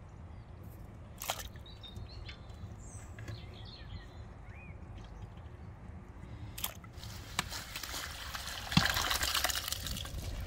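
Ice water and chanterelle mushrooms poured out of an enamel basin into a plastic colander. The splashing builds over the last three seconds and is loudest in the final second or so. Faint bird chirps come in the first few seconds.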